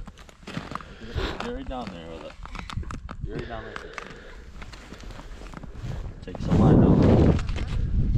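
Soft, indistinct talk on open ice, then a loud noisy rustle about six and a half seconds in that lasts about a second.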